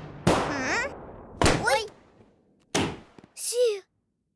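Three sudden cartoon thunder claps, each followed by a short vocal cry from a cartoon raccoon that slides up and down in pitch, the last cry near the end.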